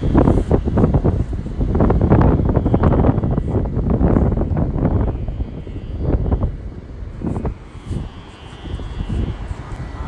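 Wind buffeting the phone's microphone in loud, gusting rumbles over the wash of sea surf. The gusts ease off after about six seconds.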